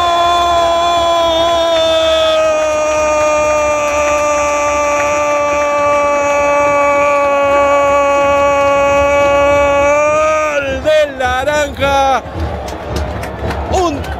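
Football commentator's long goal cry, one held "gol" shouted at a high pitch and sinking slowly for about ten seconds, announcing a goal. Near the end it breaks into wavering, warbling shouts.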